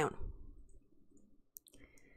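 The end of a spoken word, then quiet with a few faint short clicks near the end.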